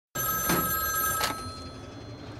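A telephone ringing, starting abruptly right at the start and dying away about a second and a half in; it opens a hardcore techno track as a sample.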